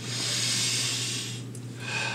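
A long breathy exhale that lasts about a second and a half and then fades, over a steady low hum.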